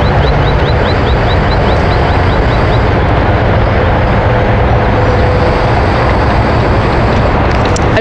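Steady, loud rushing outdoor noise with a low hum underneath, and a bird's short high chirp repeated about four times a second over the first three seconds.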